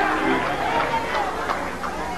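Faint voices of a congregation talking and calling out.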